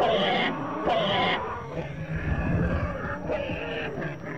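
Fighting Torosaurus calls from a documentary's dinosaur sound design: two short harsh calls in the first second and a half, then lower grunts.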